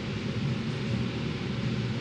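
Steady room tone of a large hall: an even low hum and hiss with no distinct events.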